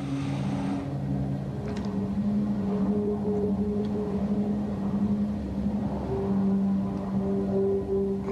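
Background music: low sustained drone notes, shifting to a new chord about a second in and again near six seconds.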